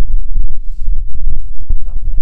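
Wind buffeting the microphone in a loud, uneven low rumble, over small clicks and scraping from a handheld cable stripper being worked along an electrical cable.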